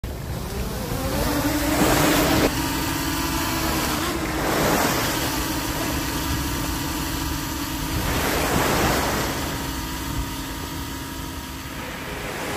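Small waves washing onto a sandy beach, swelling three times, with a steady engine hum underneath.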